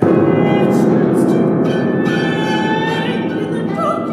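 A chamber ensemble with bowed strings plays a loud, sustained, dense passage that starts abruptly. A woman's singing voice with vibrato comes in near the end.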